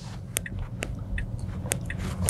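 Low road and tyre rumble inside a Tesla Model S Plaid's cabin at low speed, with light ticks about twice a second from the turn-signal indicator as the car sets up a turn.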